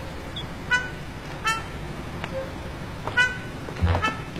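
Four short, high-pitched horn toots spread across a few seconds, over a low, steady traffic rumble.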